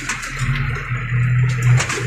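Tractor engine running under a steady low drone as the tractor drives over rough forest ground, with a few knocks and rattles from the machine, heard from inside the cab with the window open.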